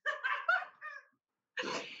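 A woman's high-pitched squealing laughter: a few short yelps in the first second, then a breathy laugh starting again near the end.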